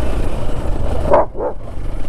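A dog barking twice in quick succession about a second in, over the steady low rumble of the motorcycle's engine and wind.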